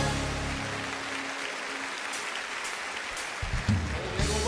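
A congregation applauding as the final held chord of a choir and orchestra dies away. About three and a half seconds in, the band starts the next song with bass and drums.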